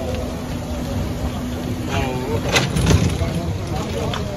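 Truck-mounted crane's engine running with a low rumble while it lifts an overturned minibus, a steady hum over roughly the first half, and a few sharp knocks a little past halfway; voices talking in the background.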